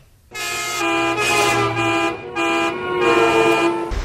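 A short tune of held horn notes at a few different pitches, about half a dozen notes in a row, starting a moment in: a horn sting between two segments of the programme.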